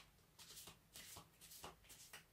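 A tarot deck being shuffled by hand: faint, irregular card flicks and slides.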